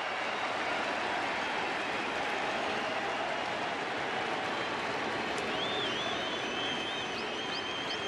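Steady noise of a large baseball stadium crowd cheering and yelling on a two-strike count, with high whistles over it in the last few seconds.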